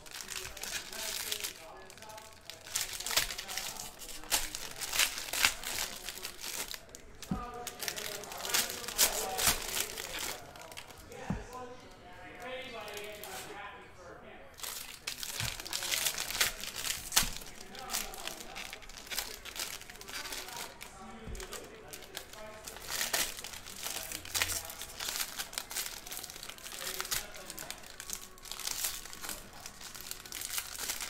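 Foil trading-card pack wrappers crinkling and tearing as they are ripped open by hand, in a long run of sharp crackles.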